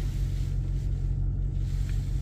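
A parked vehicle's engine idling, heard from inside the cab as a steady low rumble.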